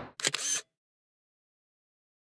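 A camera shutter firing, a brief cluster of clicks in the first half second, followed by dead silence.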